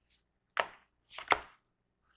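A deck of oracle cards being handled as a card is drawn off it: three short, sharp card slaps or taps, the last two close together.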